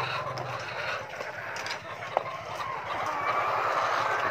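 A flock of 21-week-old laying hens clucking and calling in their cages, a steady busy background of many birds, with one sharp click a little past two seconds in.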